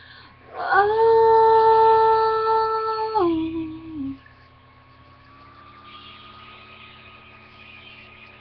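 A female singing voice holding one long, steady note for about two and a half seconds, then stepping down to a lower note and stopping about four seconds in; only faint steady tones remain after it.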